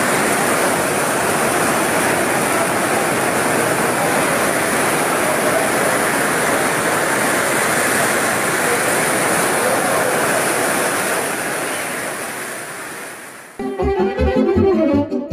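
Heavy rain pouring onto a tent, a loud steady rush of water that fades away over the last few seconds. Near the end a saxophone starts playing.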